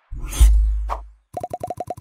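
Animated logo-intro sound effect: a whoosh with a deep bass hit, then a rapid run of short pitched pops, about ten a second.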